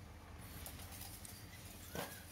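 Rotary circle-cutting shear running as it cuts a round blank from steel sheet: a steady low motor hum with faint ticking, and a sharp knock with a brief squeak near the end.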